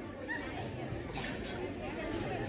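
Indistinct background chatter of several voices, faint and with no clear words.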